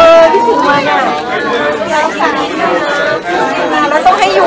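Several people talking at once: overlapping chatter from a small crowd in a room, with no single voice standing out.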